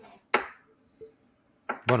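A single sharp click about a third of a second in, then a fainter click about a second in, followed by a man starting to speak near the end.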